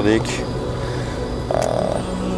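Steady low hum inside a car's cabin while driving, with one short click about one and a half seconds in.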